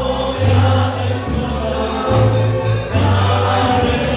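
Live folk dance band music: accordion over a moving bass line and a steady beat.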